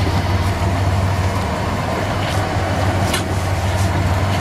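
Fishing boat's engine running with a steady low hum, with two brief sharp ticks a little past the middle.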